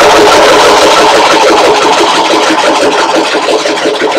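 About thirty lids rattling inside a cigar box shaken hard by hand: a loud, continuous clatter that eases a little near the end. The lids are being mixed before a draw.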